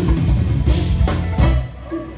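Live jazz-fusion band playing: drum kit, electric guitars, bass, keyboards and horns together, the drums hitting steadily. The band drops away sharply near the end, leaving a much quieter stretch.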